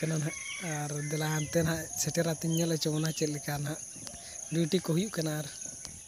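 A man talking in short phrases, with a pause about two-thirds of the way through. Behind him is a steady, high-pitched chirring of insects, likely crickets.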